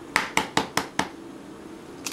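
An egg being tapped to crack its shell: a quick run of about five light taps in the first second, then a couple more clicks near the end as the shell is broken open over the bowl.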